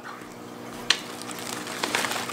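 Bubble-wrap packaging rustling and crackling softly as it is handled, with one sharp click about a second in.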